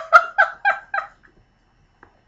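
A woman laughing in quick, high-pitched bursts, about four a second, that stop about a second in.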